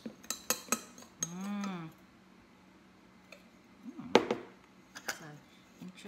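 Spoon clinking and scraping against a glass measuring cup while stirring a dry brown sugar and spice mixture: a few light clinks, a pause, then a louder cluster of clinks about four seconds in.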